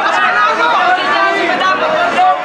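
Only speech: a man talking at close range, with other people's voices chattering behind him.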